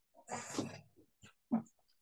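A man's short breathy vocal noise, then a brief spoken syllable near the end.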